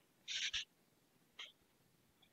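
Felt-tip marker squeaking across a whiteboard: one short stroke about a third of a second in, then a fainter brief squeak about a second later.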